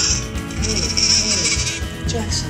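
Newborn baby crying, a thin bleating wail, heard over background music.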